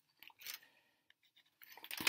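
Near silence with a few faint rustles and ticks from a sheet of vinyl being handled: one cluster about half a second in and more near the end.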